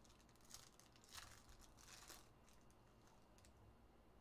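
Faint crinkling and rustling of plastic card sleeves and trading cards being handled, in a few soft bursts over near silence.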